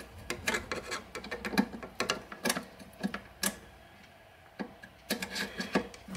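Irregular small clicks and light scraping from a small brush being worked inside an amp's reverb cable connector to clear oxidation, with a quieter pause a little past the middle.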